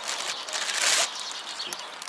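Clear plastic bag crinkling and rustling as a hand air pump and its hose are pulled out of it, loudest from about half a second to a second in.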